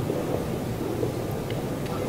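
Steady crowd noise from a large audience: an even murmur of many voices filling a big hall.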